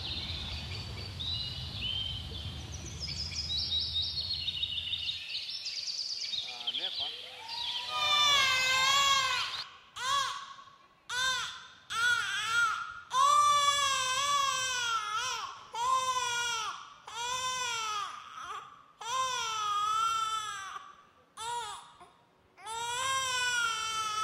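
Performance soundtrack: a low rumble with high chirping for the first few seconds, then from about eight seconds in an infant crying, a run of wailing cries about a second each with short gaps between them.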